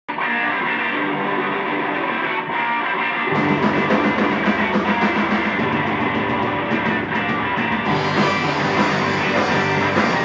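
Live rock band playing, led by electric guitar. A low end joins about three seconds in, and the sound grows brighter and fuller about eight seconds in as the rest of the kit comes in.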